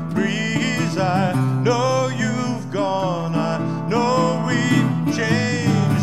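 Metal-bodied resonator guitar played fingerstyle: a steady bass line under higher melody notes that glide and waver.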